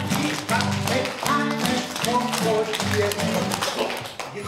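Acoustic guitar strummed in a steady rhythm, with a man singing a children's song along with it.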